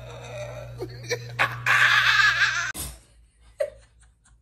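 Loud laughter over a steady low hum, hardest about halfway through, then cut off sharply nearly three seconds in, followed by a brief short laugh.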